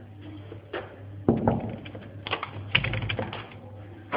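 A room door being unlocked and opened: a series of sharp clicks and rattles from the lock and handle, with a steady low hum underneath.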